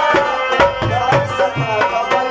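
Live Pashto folk ensemble: a tabla plays a steady rhythm with deep bass-drum strokes over harmonium chords and a plucked rubab.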